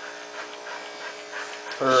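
Electric dog clippers buzzing steadily, cutting through a dog's coat during shearing.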